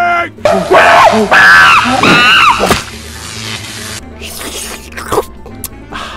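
Cartoon soundtrack: a character's frantic screeching and wailing over a burst of crackling noise from a malfunctioning, sparking helmet, lasting about two and a half seconds. Quieter music with a few scattered clicks follows.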